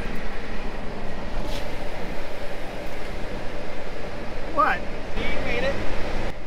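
Steady engine and road rumble heard inside a pickup's cab as it rolls slowly over a rocky dirt track, with a brief voice near the end.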